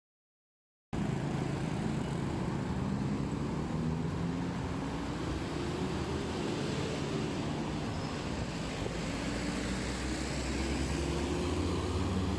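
Silent for about a second, then road traffic: car engines and tyre noise, with one engine's note rising for several seconds and then dropping as it pulls away.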